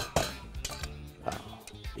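Background music, with a couple of quick clinks of a spoon against a metal bowl right at the start.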